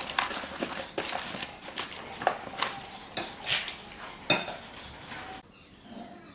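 Hands squishing and turning chicken feet in a wet marinade in a ceramic bowl: wet squelching with irregular clicks and knocks of the feet against the bowl. It stops suddenly about five seconds in.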